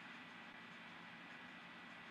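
Near silence: a steady faint room hiss in a pause between words.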